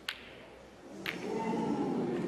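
Two sharp clicks of snooker balls striking each other, about a second apart, then the crowd's murmur swelling in the arena.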